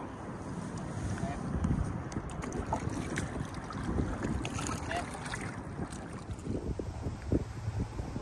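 Kayak paddle strokes splashing and dripping in lake water, with wind buffeting the microphone.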